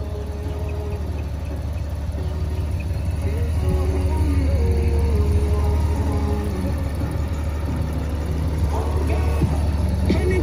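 Background hip-hop music with a sung vocal line, over a steady low rumble from the Honda Gold Wing GL1800's flat-six engine idling.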